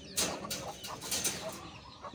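Chickens clucking in the background, with two short rustling noises, one just after the start and one about a second in.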